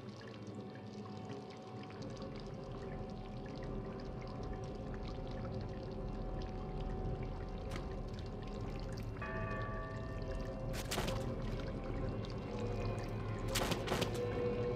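Water pouring and streaming down the walls of a room in a steady rush that slowly grows louder, over held, sustained synthesizer tones of the film score. Two short, sudden crashes come near the end as wet plaster starts to break from the ceiling.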